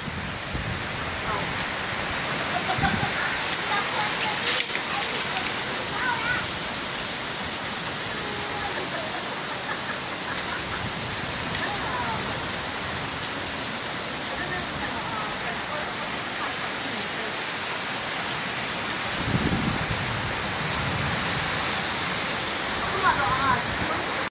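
Steady heavy rain falling in a rainstorm. A low rumble swells briefly about twenty seconds in.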